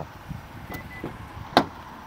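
A car door latch clicking once, sharply, about one and a half seconds in, over quiet outdoor background. A faint short beep comes a little earlier.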